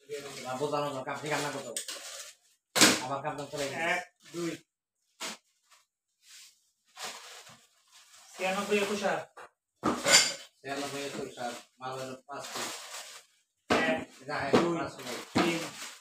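People talking in short phrases, with a few sharp clinks of small items being handled and set down on a table.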